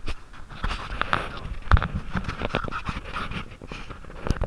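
Handling noise from a handheld action camera being gripped and turned around: irregular rustling and scraping against the microphone, with many small clicks and knocks and one louder knock near the middle.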